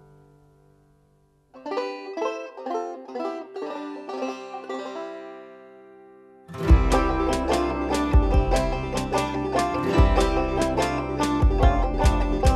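Background music: a song fades out to a brief silence, then a new song opens with a run of plucked-string notes. About halfway through, a full band with a steady drum beat comes in, louder.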